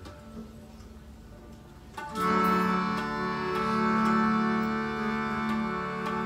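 Harmonium playing a quiet low drone, then about two seconds in a full sustained chord that is held steady with slight swells. Faint light ticks come about twice a second over it.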